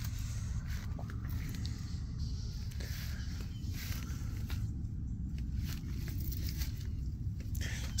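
Faint footsteps on a dirt and grass track over a steady low rumble.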